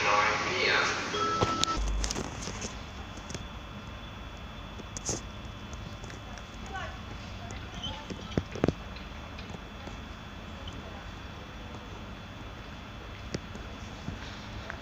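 Quiet railway-station platform ambience as a railjet passenger train rolls slowly in: a steady low hum with a few sharp clicks and knocks. Voices are heard in the first second or two.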